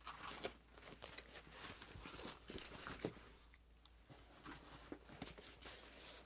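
Faint rustling and soft knocks of fabric organizer pouches being handled and set down on a desk mat, with a sharper tick about three seconds in.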